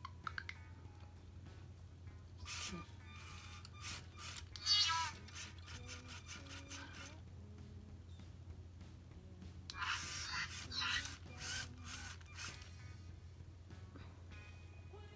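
Lego Mindstorms Robot Inventor (51515) Charlie robot running a preset program: several short bursts of motor and gear whirring with electronic chirps as it turns and swings its arms. The loudest burst comes about five seconds in and ends in a falling tone.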